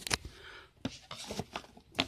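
Quiet handling noise: a few soft clicks and taps with light rustling as objects are moved about on a tabletop.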